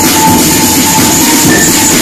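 Loud electronic dance music playing without a break over a club sound system, picked up by a nearby camera microphone.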